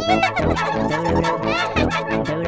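Playful cartoon title-card music with a steady beat and a bending, wavering lead line.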